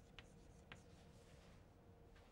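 Chalk writing on a chalkboard, very faint: two light taps of the chalk on the board, the first shortly after the start and the second about half a second later.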